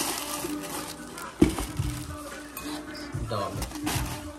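Tissue paper rustling as a gift box is unpacked, with one sharp clink of a ceramic dog bowl about a second and a half in, over soft background music and low voices.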